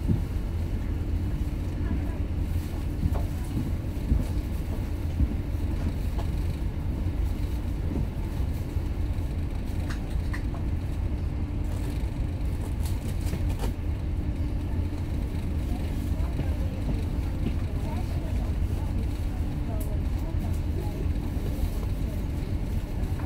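A ferry's engines running steadily, heard from on board as a deep, even drone with a steady hum above it.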